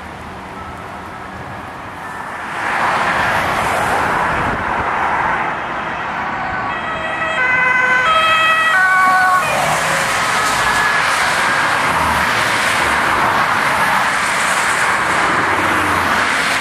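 Ambulance two-tone siren alternating between a high and a low note, loudest as the ambulance passes close by about seven to nine seconds in. It sounds over the steady rush of road traffic and tyres.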